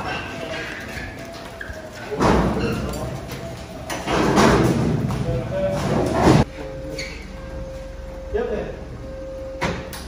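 A crash-damaged Nissan S13 being pushed by hand by a group of people, with their voices in the background. There are two loud stretches of rough rumbling noise, about two seconds in and again from about four to six seconds.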